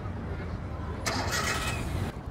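Low, steady vehicle rumble with a louder rushing noise starting about a second in and lasting about a second.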